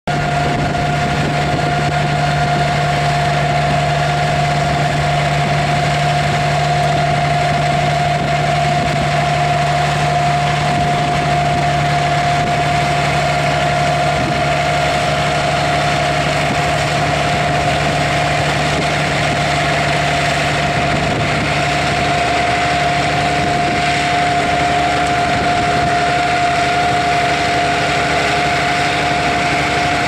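Deutz-Fahr AgroStar 6.81 tractor's six-cylinder diesel running steadily under load as it pulls a Dewulf trailed harvester, the harvester's machinery running with it and a steady high whine throughout. A low drone drops out about two-thirds of the way through.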